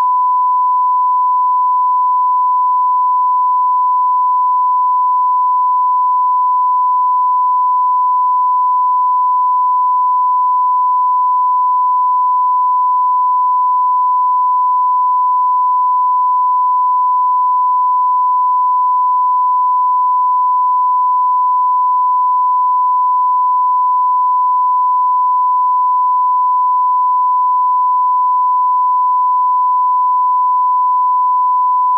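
Broadcast line-up test tone played with colour bars: a single steady, pure beep at the standard 1 kHz reference pitch, unbroken and at constant level.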